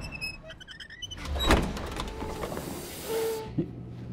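Freight elevator doors sliding open with a low mechanical hiss. There is a swell of noise about one and a half seconds in, a short chime a little after three seconds, and then a steady low hum.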